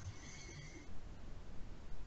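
Faint background noise on an online-meeting microphone line, with a faint, thin high tone for a moment in the first second.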